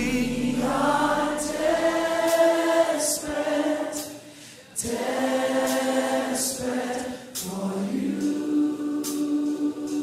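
Gospel worship choir singing long held chords with little or no band under them. The voices fade away about four seconds in and come back in strongly a moment later.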